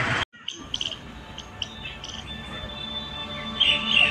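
Scattered short, high bird chirps over a faint steady background, with soft music underneath.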